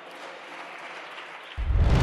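Applause in the chamber. About one and a half seconds in, outro music with a deep bass cuts in, with a whoosh near the end.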